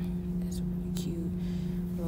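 A woman whispering softly, with a few hissing 's' sounds and a short murmur just after one second, over a steady low hum.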